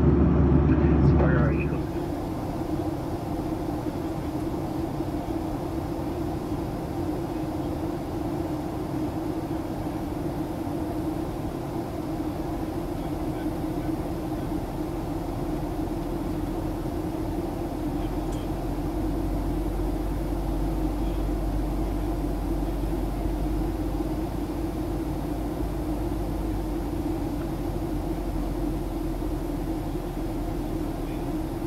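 Steady cabin noise inside a Boeing 737-800 airliner in descent: the even drone of engines and airflow heard through the cabin. A deeper low hum grows a little stronger about halfway through.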